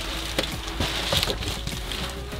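Rustling and scraping of a large, stiff homemade van window cover being handled and turned over, with several light clicks and knocks as it moves, over a steady low hum.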